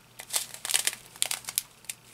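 Clear plastic bags of resin diamond-painting drills crinkling in irregular crackles as they are handled.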